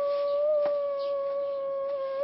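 A boy crying in one long, drawn-out wail held on a single steady pitch.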